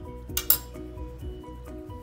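Background music with a stepping melody, and about half a second in a single sharp clink of a glass plate set down on a stone countertop.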